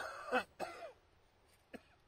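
A person clearing their throat in several short bursts within the first second, followed by a faint single click.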